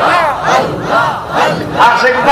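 Men chanting a loud, fast jalali zikir through a PA: forceful cries that rise and fall in pitch, about two a second.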